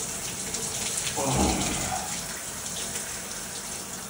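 Overhead rain shower head spraying a steady stream of water onto a person's back and head. About a second in, a brief low vocal sound rises over the spray.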